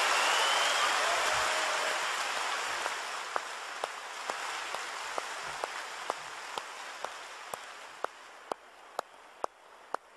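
A large theatre audience applauding at the end of a speech, loudest at first and gradually dying away. From about three seconds in, sharp single claps come through at an even pace of about two a second as the rest of the applause fades.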